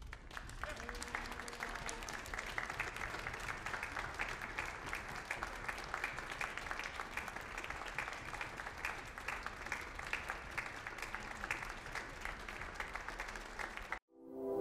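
Group applause: many hands clapping steadily at a moderate level, with no music under it. It cuts off abruptly at the end.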